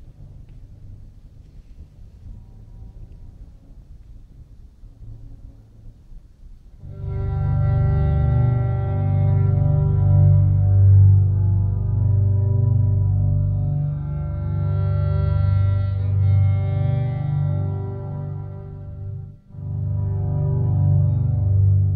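Solo violin with live computer processing: a Max patch pitch-tracks the violin and sounds its overtones in real time. After about seven seconds of quiet room noise, a loud sustained chord of steady stacked tones over a deep low drone comes in, swelling and easing, with a brief drop just before the end.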